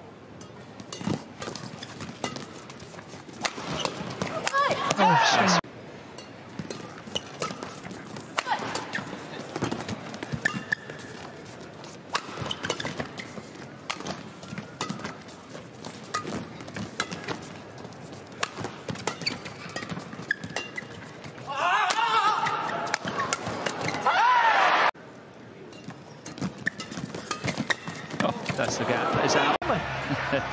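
Badminton rallies in a large arena: sharp clicks of rackets striking the shuttlecock. Two loud bursts of crowd cheering and shouting come about four seconds in and again about twenty-two seconds in.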